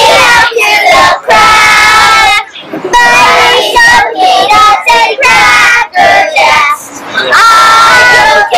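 A group of children shouting and chanting loudly in bursts, with drawn-out, sing-song cries.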